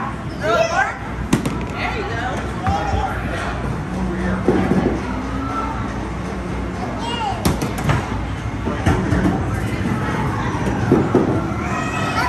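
Busy arcade noise: people talking, game music and jingles, with a few sharp knocks, one about a second in and several around eight seconds.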